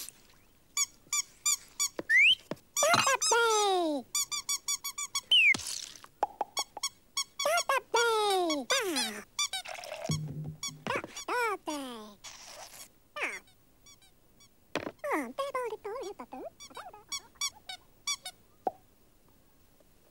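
Squeaky, high-pitched cartoon character voices babbling in gibberish: rapid chirping runs and several swooping glides, mostly falling in pitch, with a couple of short rising ones.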